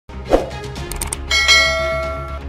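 News-channel logo sting: a short, loud sweep near the start, then a bright bell-like chime struck about a second and a half in and ringing on over a low steady hum.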